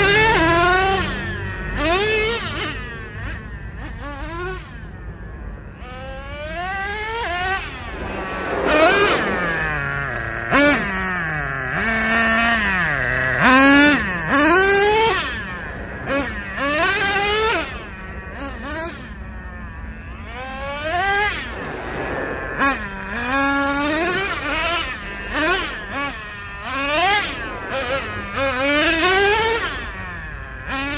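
The small two-stroke nitro engine of a Traxxas Revo 3.3 RC monster truck, fitted with an OS Max carburetor, revving hard again and again. Each burst of throttle is a rising whine that falls away when the throttle is released, coming every second or two, with a few longer falling sweeps as the truck passes.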